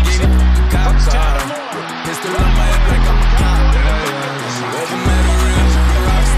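Hip hop track with deep, held bass notes that drop out briefly twice, and a voice over the beat.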